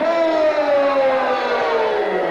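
A man's long drawn-out call through the hall's microphone and speakers, one held word that slides steadily down in pitch, the way a ring announcer stretches out a name.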